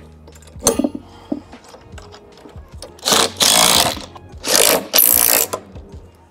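Rustling, scraping handling noise in three loud rushes of about a second each, starting about three seconds in, after a short clink near the start.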